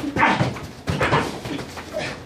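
A person's short, sharp cries and a laugh, about four quick bursts in two seconds, during gloved boxing sparring.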